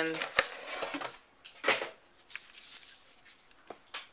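Cardboard and paper box contents being handled: rustling with a louder rustle a little under halfway through and a few light clicks and knocks near the end.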